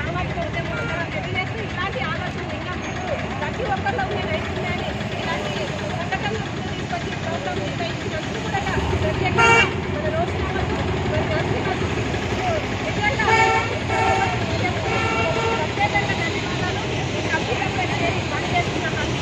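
Indistinct chatter of people standing by a road, over passing traffic. A vehicle horn toots briefly about halfway through, and pitched horn-like toots come twice more a few seconds later.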